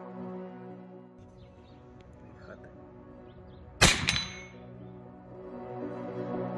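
A single unsilenced shot from an Evanix Rex Ibex .22 (5.5 mm) pre-charged pneumatic air rifle: one sharp, loud crack about four seconds in, with a short high ringing tail. Quiet background music plays underneath.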